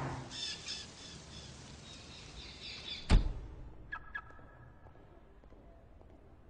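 Birds chirping rapidly and high-pitched, cut off by a single sharp, loud knock about three seconds in, then a few faint high calls.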